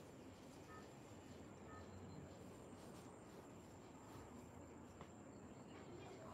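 Near silence: faint outdoor background with a thin, steady high-pitched tone throughout and a couple of very faint short chirps in the first two seconds.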